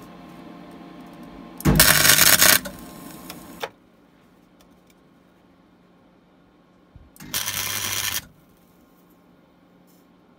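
Gasless flux-core MIG welder putting tack welds on a sheet-steel floor patch: two short bursts of arc crackle, each about a second long, the first about two seconds in and the second around seven and a half seconds in.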